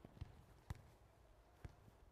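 Near silence with three faint, short knocks of a football being kicked in a passing drill, spread across about two seconds.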